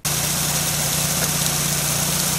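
An engine running steadily at idle, a constant low hum under an even hiss, with no change in speed.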